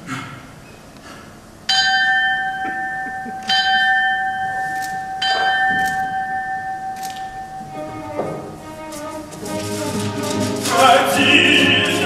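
Three bell-like struck notes, each left to ring out, about a second and a half to two seconds apart, as part of a theatre accompaniment. After them, from about two-thirds of the way in, orchestral music swells in and grows louder toward the end.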